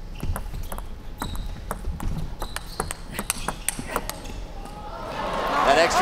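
Table tennis rally: the plastic ball clicking sharply off bats and table about a dozen times over four seconds. As the point ends, voices rise in shouting and cheering and become the loudest sound.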